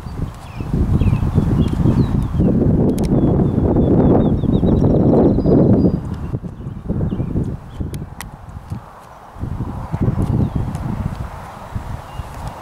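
Wind buffeting the microphone in gusts, a heavy low rumble that is strongest in the first half and eases about six seconds in.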